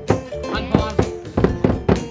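Music with sustained guitar-like chords and a quick run of sharp drum strikes, about four to five a second, matching a skin drum beaten with sticks.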